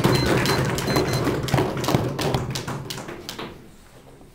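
Audience applause given by knocking and tapping on desks: a dense, irregular patter of thuds and taps that thins out and fades in the last second.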